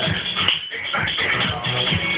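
Music with a steady beat, with a brief click about a quarter of the way in.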